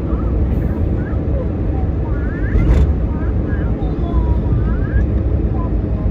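Steady rumble of wind and road noise from a moving vehicle on the road, with faint voices in the background.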